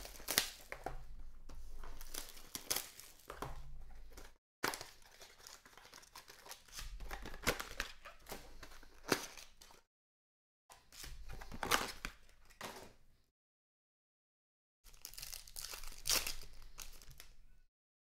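Foil trading-card pack wrappers being torn open and crinkled, with cards shuffled and handled, in crackly bursts with sharp clicks. The sound cuts out completely for about a second several times.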